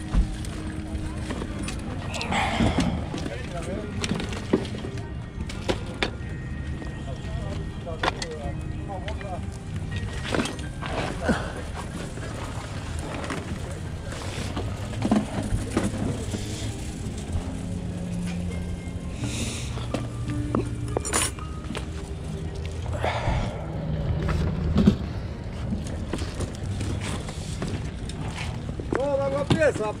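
Open-air market ambience: music playing and people talking, with scattered short clicks and knocks of items being handled.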